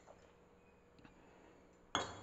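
Near-quiet kitchen room tone with a couple of faint ticks, then a single sharp clink near the end.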